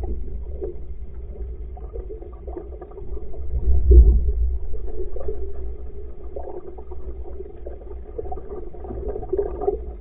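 Low rumble of water and wind against a camera mounted on the stern of a rowing shell under way, swelling to its loudest about four seconds in.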